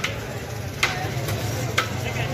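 Metal ladle striking the rim of a large metal biryani pot twice, about a second apart, each strike ringing briefly, over a steady low hum.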